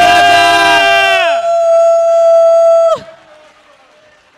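Audience giving loud, long whooping cheers: several voices glide up in pitch and hold, the last one cutting off sharply about three seconds in, leaving faint crowd noise.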